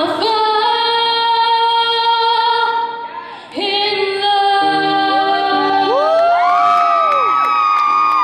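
A woman's solo voice singing long held notes live, with grand piano accompaniment; the sound dips briefly about three seconds in. In the last few seconds, audience whoops rise and fall over her held note.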